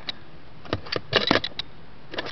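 DLO VideoShell, a clear hard-plastic snap-on case for the iPod touch, clicking and knocking as it is handled and turned over: a quick run of sharp plastic clicks in the second half.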